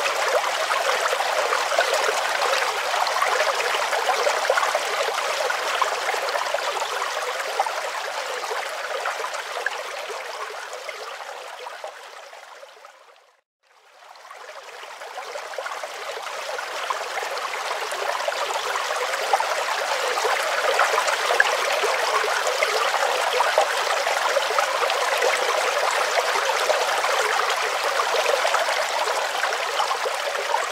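Water rushing over rocks in a shallow mountain river, a steady rush that fades out to near silence about halfway through and fades back in.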